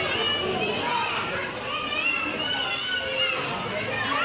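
Young children's voices calling and chattering, high-pitched, with no clear words.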